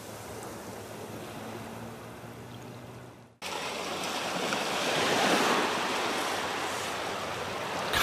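Waves washing up on a sandy beach, softer at first. After an abrupt cut about three and a half seconds in, the surf is louder and swells a little past the middle.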